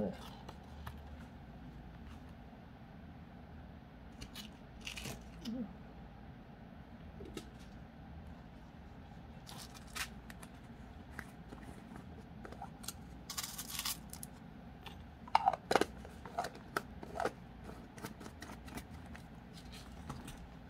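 Faint crafting handling noises: scattered small clicks and taps of wire and chain being handled, with a few short rustling scrapes, the longest about thirteen seconds in.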